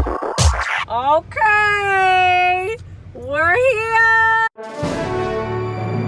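Edited-in music: an electronic beat breaks off about a second in, followed by two long held vocal notes that each slide up into pitch. The sound cuts out suddenly and a different, softer background track begins.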